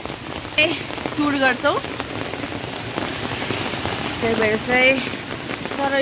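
Steady rain falling on umbrellas, with a voice heard briefly twice, about a second in and again near the end.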